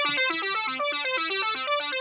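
Logic's ES1 software synthesizer playing a fast sequence of bright notes, the pitch stepping up and down several times a second.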